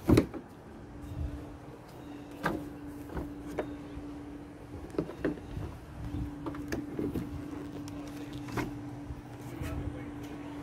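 Scattered clicks and knocks as a Jeep Gladiator's hood is released, unlatched and lifted, the sharpest click right at the start. A steady low hum runs underneath.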